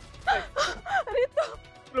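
A voice crying out in four or five short, high-pitched exclamations, over background music.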